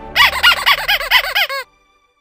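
A short squeaky intro jingle: a quick run of about eight high chirping notes, each rising and falling in pitch, that cuts off suddenly after about a second and a half.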